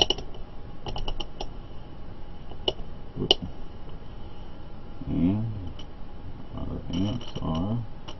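Plastic clicks of a handheld digital multimeter's rotary selector dial being turned, a quick run of detent clicks about a second in and more near the end, as the meter is switched from volts to amps. Short wordless vocal murmurs come in between.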